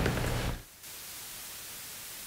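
Steady hiss of static with no other sound, after the low hum of room tone fades out in the first half second.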